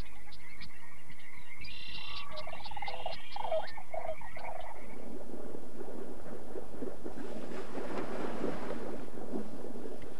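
A chorus of frogs calling, a low steady croaking drone with higher chirps over it. About five seconds in, the calls give way to a steady rushing wash of water.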